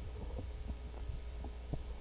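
Steady low hum, with a few faint soft knocks and clicks scattered through it.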